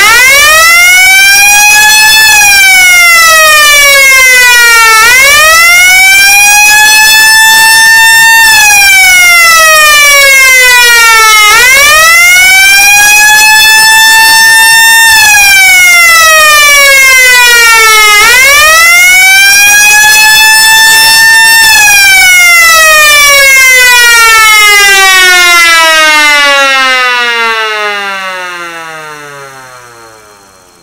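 Old-model S0 electric motor siren wailing: its pitch climbs for about two seconds and falls for about three, four times over. After the fourth peak it winds down in one long falling whine, fading away over the last several seconds.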